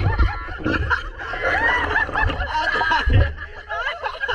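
Several people laughing and snickering together at the water's surface, with low rumbles of water splashing close to the camera.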